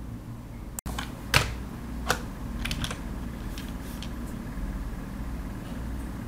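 Computer keyboard keystrokes: a handful of separate key clicks spread over a few seconds, the sharpest about a second and a half in, over a steady low hum.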